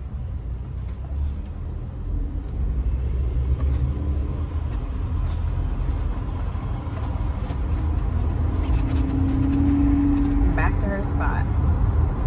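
Car cabin noise while driving: a steady low rumble of engine and road, with a low hum that swells about nine seconds in.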